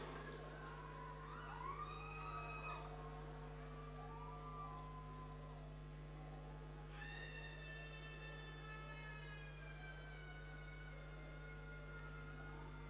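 Faint, high wailing voices from a crowd in a large hall, with short rising-and-falling cries in the first few seconds. A long call begins about halfway through and slides slowly down in pitch. A steady low electrical hum runs underneath.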